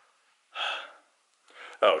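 A man's short audible breath through the mouth, about half a second long, coming about half a second in, followed near the end by the start of his spoken "oh".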